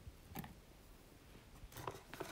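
Two faint knocks as peeled zucchini chunks are dropped into a plastic blender cup, otherwise near silence.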